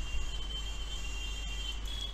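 A low, steady hum under a faint, steady high-pitched whine that fades out near the end.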